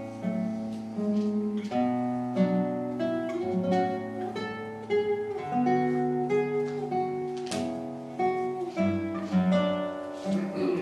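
Nylon-string classical guitar played solo in a slow, expressive movement: a melody of plucked notes over longer-held bass notes.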